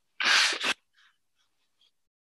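A person's single sharp, sneeze-like burst of breath through the nose, about half a second long, ending in a short second puff.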